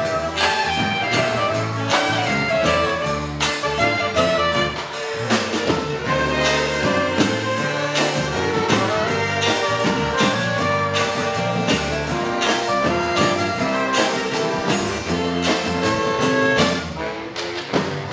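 Saxophone quartet of soprano, alto, tenor and baritone saxophones with electric guitar, bass guitar, drum kit and hand percussion playing a danceable tune live, the saxes holding sustained melody lines over a steady drum beat.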